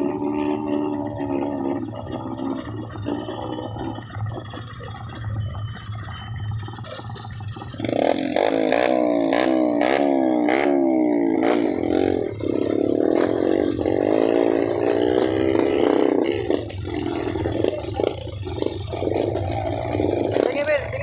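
Dirt bike engines: a low, steady idle throughout, then from about eight seconds in a motorcycle engine is revved up and down again and again for several seconds, loud, before easing back.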